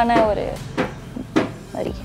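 A voice trails off at the start, followed by a few short, sharp knocks and clicks spread over the next two seconds.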